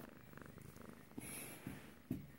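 Domestic cat purring close to the microphone as it is stroked, with a few soft bumps and a brush of fur against the phone.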